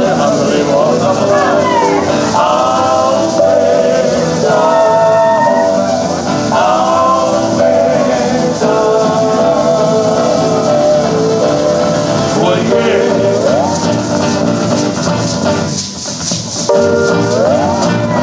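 Live Hawaiian song with a singing voice and guitar, accompanied by the shaking of feathered gourd rattles (ʻuliʻuli) held by hula dancers. The music dips briefly near the end, then picks up again.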